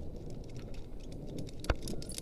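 Rumbling handling noise on a body-worn camera as rope-jumping gear at the harness is worked on, with a few faint clinks and one sharp click near the end.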